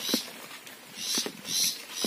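Footsteps of someone walking on a wet paved road, about two steps a second.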